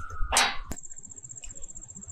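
A short rustle and a sharp click in the first second, then a high, rapidly pulsing insect trill that runs on steadily.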